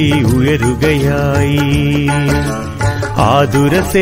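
A song in Malayalam sung by a solo voice over instrumental accompaniment. In the middle the singer holds one long note with vibrato, then moves on to shorter phrases.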